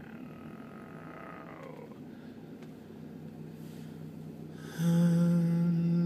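Low rumbling background noise, then about five seconds in a loud, deep chanted note begins and is held at a steady pitch.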